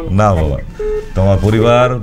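A man speaking, broken about a second in by a short, steady telephone-line beep.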